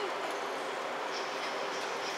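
Steady, even background noise of a large indoor livestock arena, with no distinct hoofbeats or calls standing out.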